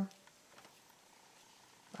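Near silence: faint room tone, with a tiny soft tick about half a second in.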